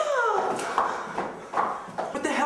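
A drawn-out high yell that falls in pitch and trails off within the first half-second, followed by a few faint knocks and scuffs.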